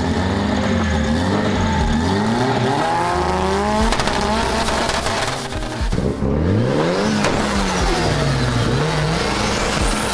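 Mitsubishi Lancer Evolution's turbocharged four-cylinder engine revved hard again and again while parked, its pitch climbing and falling several times, with a brief drop about six seconds in.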